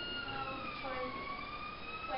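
A steady high-pitched whine with overtones that dips in pitch about half a second in and slowly climbs back, under faint background voices.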